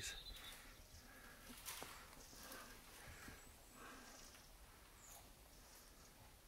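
Near silence, with faint soft rubbing from fingers pressing down the edges of a freshly glued patch on a PVC inflatable boat tube.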